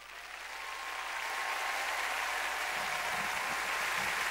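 Arena crowd applauding at the end of a figure skating exhibition program, swelling over about the first second and then holding steady.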